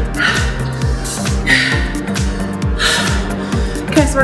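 Background workout music with a steady drum beat, over a woman's heavy open-mouthed breathing: hard gasping breaths about every second and a half, as she recovers from a high-intensity interval.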